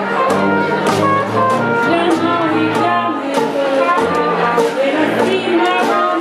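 A traditional New Orleans-style jazz band playing: a tuba bass line under banjo strumming on a steady beat, with brass and a woman singing.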